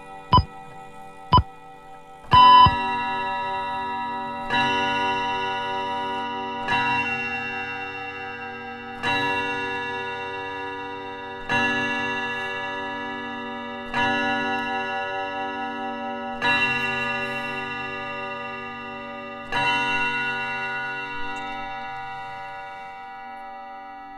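Radio Thailand's time-signal clock striking the hour: two last ticks about a second apart, then eight ringing chime strikes a couple of seconds apart, each fading slowly, marking eight o'clock.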